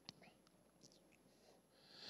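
Near silence: room tone, with one faint click at the very start.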